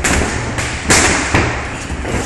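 Boxing gloves landing punches in sparring: about four sharp smacks, the loudest about a second in.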